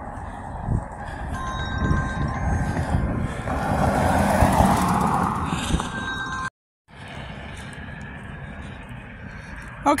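Road traffic passing on the street beside the sidewalk: a vehicle's noise swells to its loudest about four to five seconds in. The sound then cuts out for a moment, and a lower, steady traffic rush carries on.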